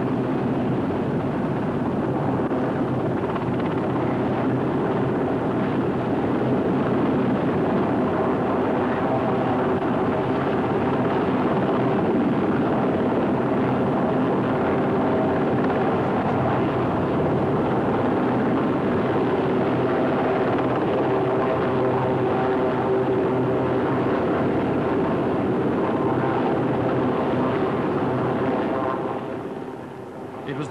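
Westland Sea King helicopter hovering low over the water, its rotor and engines running steadily and loudly; the sound drops away just before the end.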